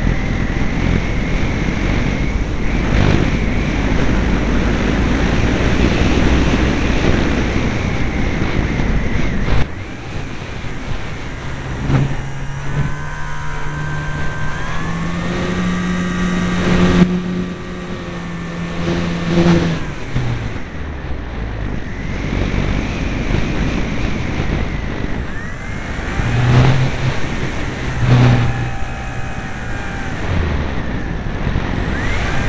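Airflow rushing over the microphone of a wing-mounted camera on a Parkzone Radian electric glider in flight, loud for the first ten seconds and then dropping off suddenly. After that the glider's electric motor and propeller drone for several seconds, stepping up in pitch partway through, with shorter bursts of the same drone near the end.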